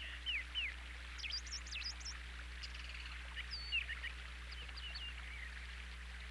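Birds chirping: a scattered string of short, quick chirps, some falling in pitch and some high and twittering, heard faintly over a steady soft hiss and low hum.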